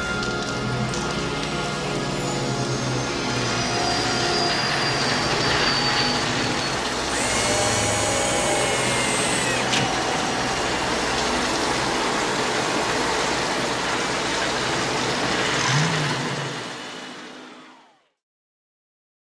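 Film sound effect of the flying DeLorean time machine descending and hovering: a steady rushing hiss of its hover jets with whines that fall in pitch, over the fading tail of the orchestral score. It fades out over the last two seconds.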